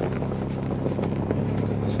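Snowmobile engine running steadily, a constant low drone.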